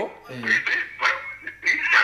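A voice heard over a telephone line, thin and distorted, with a steady low hum underneath.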